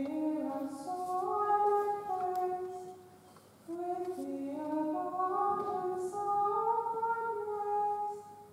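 Slow unaccompanied singing of a hymn: voices hold long, steady notes that step from pitch to pitch in phrases, with a short breath pause about three seconds in.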